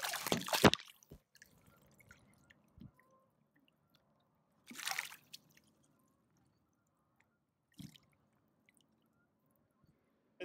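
A hooked crappie thrashing and splashing at the water's surface, loudest right at the start, with a second shorter splash about five seconds in. A single brief thump comes near the end.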